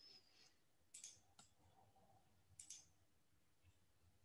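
Near silence: room tone with a few faint, short clicks, about a second in, again just after, and once more past the middle.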